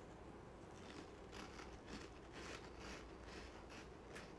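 Faint chewing of food with the mouth closed, soft repeated chews about two to three times a second, starting about a second in.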